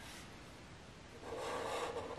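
A Sharpie fine-point marker drawing on paper: a single soft, scratchy stroke that starts a little over a second in.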